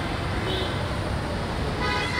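Street traffic rumbling steadily, with vehicle horns honking: a short toot about half a second in and a longer honk near the end.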